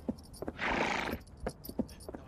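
A horse gives one short, breathy neigh about half a second in, with a few hoof clops before and after it.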